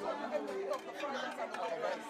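Indistinct chatter of many people talking at once, a party crowd of guests' voices overlapping.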